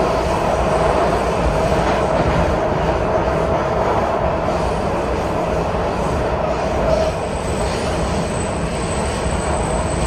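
WMATA Metrorail Breda 3000-series railcar running along the track, heard from on board: a steady rumble and rush with a sustained whine. The level dips slightly about seven seconds in, and a faint very high tone comes in after that.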